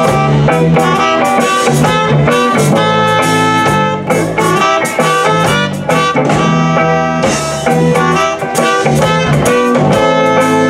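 Live reggae band playing an instrumental passage: electric guitar, bass and drum kit with saxophone lines over a steady beat.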